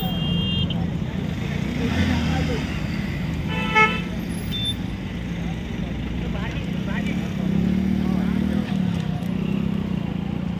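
Road traffic passing, with a single short vehicle horn toot just under four seconds in, over the voices of people nearby.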